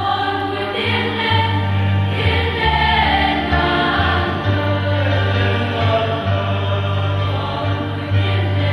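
A choir singing a hymn over low, held accompaniment notes that change every second or so.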